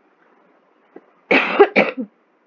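A person coughing twice in quick succession, about a second and a half in.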